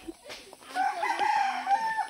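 A rooster crowing once: one long call lasting over a second, starting about half a second in and rising slightly in pitch at its end.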